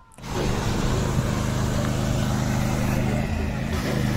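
Fire truck engine running steadily, a low even drone under a steady hiss.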